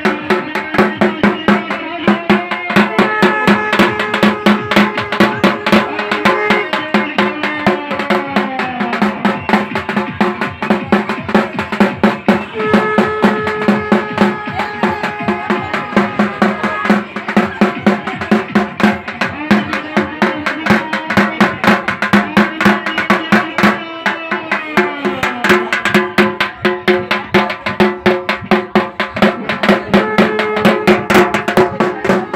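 Fast, dense drumming that runs on without a break, with a melody over it whose notes hold and then slide down every few seconds.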